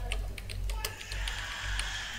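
Computer keyboard typing: a quick run of keystrokes, about a dozen in two seconds, with a low hum underneath.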